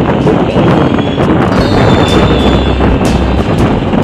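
Wind buffeting the microphone of a moving Honda motor scooter, with the scooter's running and road noise underneath, steady and loud throughout.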